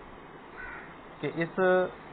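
A man's voice speaking after a pause of about a second, with only low background hiss in the pause.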